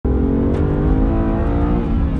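BMW M2 CS's twin-turbo straight-six running hard at track speed, heard from inside the cabin, its pitch easing slightly downward.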